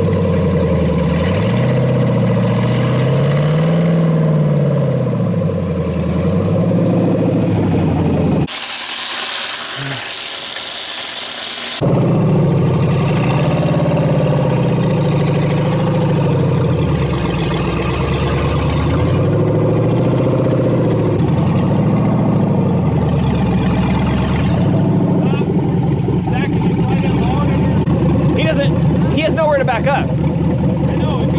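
Off-road buggy engine revving up and falling back again and again as the rig crawls over logs, dropping away briefly about eight seconds in before revving on.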